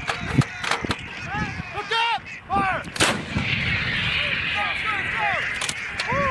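Towed howitzer firing: several sharp cracks, then the loudest blast about three seconds in, followed by a rushing noise that lingers for a couple of seconds.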